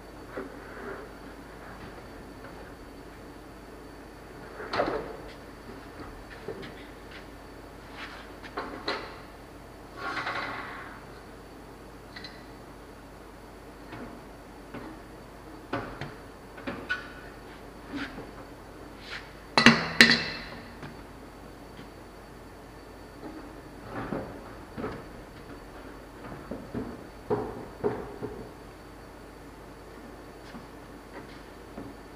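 Work sounds of a heavy rubber conveyor belt being handled and fitted onto a steel conveyor frame: scattered knocks and clunks. The loudest is a pair of ringing bangs about two-thirds of the way in.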